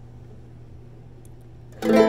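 A low steady hum, then near the end a chord strummed on a guitalele (a small nylon-string guitar), starting suddenly and ringing out.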